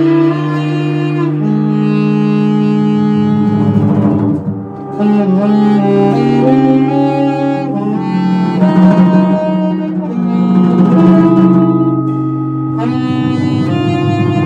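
Tenor saxophone playing long held notes that step from pitch to pitch in a free jazz improvisation, with other sustained tones sounding under it. The sound dips briefly about four and a half seconds in.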